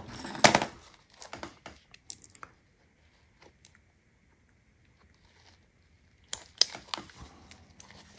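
Small metal clicks and clinks from a key keeper's snap-hook clip being handled and hooked onto a nylon pouch. A sharp click comes just under a second in, then a few lighter ones. After a quiet stretch, more clicks come near the end.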